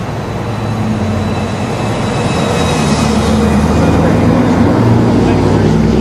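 A motor vehicle's engine running close by with a low, steady drone that grows gradually louder.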